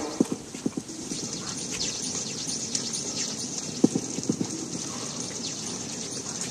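Footsteps and shuffling on a wooden deck: a few short knocks near the start and again about four seconds in, over a steady background hiss.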